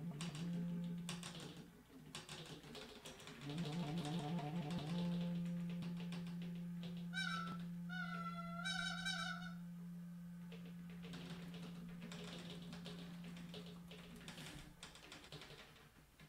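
Free improvisation: a clarinet flutters on a low note, then holds it steadily for several seconds, while sharp clicks and taps sound throughout. About halfway in, a higher warbling, bird-like whistle is blown through a tube of a homemade 'bird machine' for a couple of seconds.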